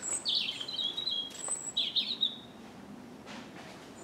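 A songbird singing two short, quick, high phrases in the first two and a half seconds, over a faint steady background.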